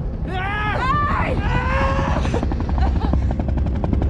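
A man and a woman yelling and cheering up at a helicopter, their long shouts rising and falling for the first two seconds. Then a military helicopter's rotor chops rapidly, roughly a dozen beats a second, over a steady low rumble.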